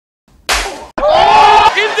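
A loud slap to the face about half a second in, fading quickly and cut off short, followed by a man shouting.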